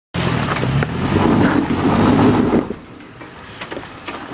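Toyota FJ Cruiser's 4.0 L V6 engine working under load as the vehicle crawls a steep, rutted dirt track. It is loud for about the first two and a half seconds, then falls away to a quieter run with a few scattered clicks.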